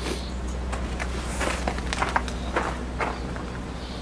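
Light scattered knocks and scrapes of a ceramic tile being handled and measured on a wet tile saw's table, over a steady low hum.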